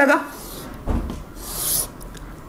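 Chalk rasping across a blackboard as a straight line is drawn: a dull knock about a second in, then a short, high scraping stroke lasting about half a second.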